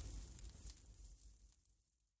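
Fading tail of a logo-reveal sound effect, a low rumble with hiss, dying away to silence about one and a half seconds in.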